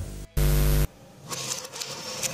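A loud half-second burst of buzzing static, then softer irregular crackling and clicking, the kind of noise heard between recordings dubbed from old videotape.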